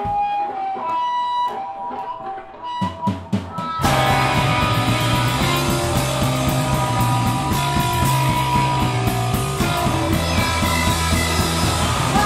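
A live rock band starts a song. An electric guitar plays a few single ringing notes, a few drum hits follow, and about four seconds in the full band comes in loud with guitars, bass and drums.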